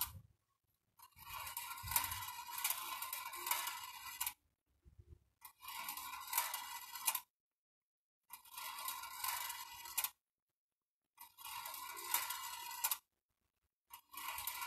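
Steel balls rolling and clinking along the bent-wire track and spiral lift of a homemade marble-run machine: a light metallic rattle of small clicks. It comes in four stretches of a second and a half to three seconds, cut apart by dead-silent gaps.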